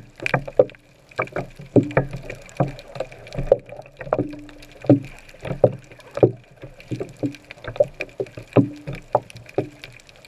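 Underwater sound heard through a camera's waterproof housing: irregular muffled knocks and clicks, one or two a second, over a faint steady background.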